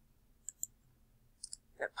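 A few light clicks of a computer mouse and keyboard: a pair of clicks about half a second in and a short cluster about a second and a half in. Speech starts near the end.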